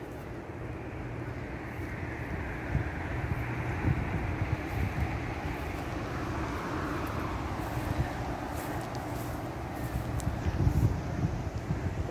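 Wind buffeting the phone's microphone outdoors, a continuous rumble with a broader swell through the middle that fades again.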